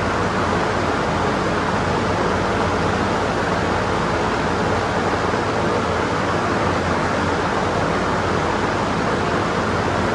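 A steady rushing noise with a low hum under it, unchanging in level throughout.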